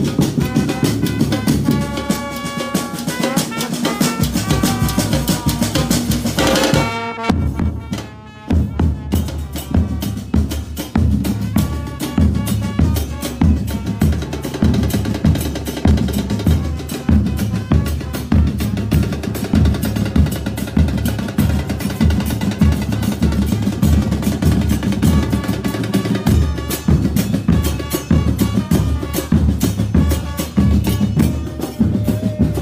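A football supporters' band of bass drums and snare drums playing loudly, with a brass melody over the drums for the first seven seconds or so. The band stops together for a short break about seven seconds in, then the drums come back in on their own with a fast, steady beat.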